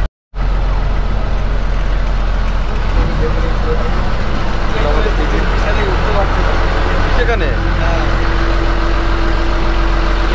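A boat's inboard engine running with a steady low drone, heard from inside the lower cabin. A low steady hum comes in partway through.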